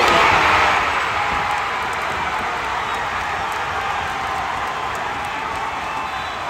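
Crowd cheering, swelling to its loudest in the first second and then carrying on steadily, easing off slowly.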